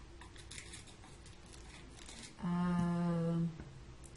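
A woman's voice holds one steady, level-pitched hum for about a second, starting past the middle. Before it come faint soft rustles of crocheted fabric being handled.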